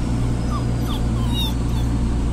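Miniature pinscher puppy whimpering: a few short, high whines in the middle, over the steady low drone of a bus engine. The puppy is uneasy at the unfamiliar ride.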